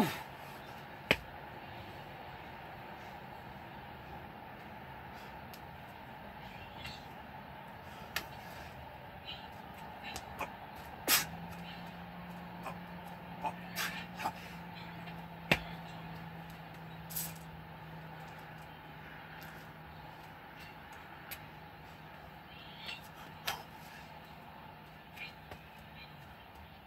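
Sporadic sharp taps and slaps of gloved hands and feet on a concrete patio during burpees with push-ups, with the exerciser's breathing, over steady outdoor background noise. A low steady hum joins about eleven seconds in.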